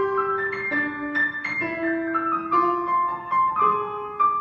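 Grand piano playing a melody of separate notes, about two or three a second, over held lower notes.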